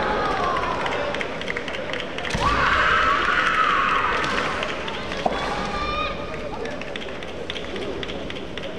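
Kendo fencers' kiai shouts, led by one long drawn-out yell that starts about two and a half seconds in and lasts about two seconds, with shorter shouts around it and a single sharp knock about five seconds in.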